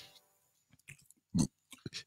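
A few short mouth clicks and smacks at a microphone in a quiet room, one louder and fuller about one and a half seconds in.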